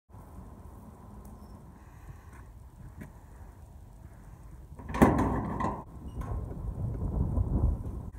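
Steel bolt latch on a corrugated sheet-metal shed door drawn back with a loud clank about five seconds in, followed by the thin metal door rattling and scraping as it is swung open.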